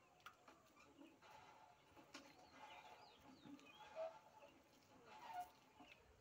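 Near silence, with faint, scattered bird calls; two short ones stand out about four and five and a half seconds in.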